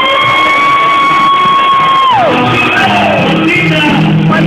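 A voice holds one long high note for about two seconds, sliding up into it and dropping away sharply at the end, over loud karaoke backing music; lower sung or spoken phrases follow over the music.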